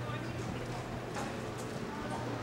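A sharp click, then a knock about a second later, over a steady low hum and faint distant voices.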